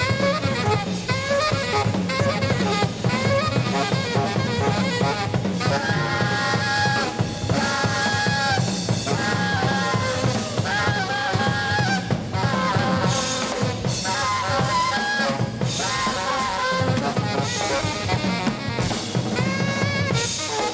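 Jazz quartet playing live: an alto saxophone plays runs of held and bending notes over a busy drum kit, with piano and acoustic bass underneath.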